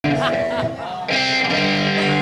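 Amplified electric guitar ringing with held notes, a new sustained chord coming in about a second in.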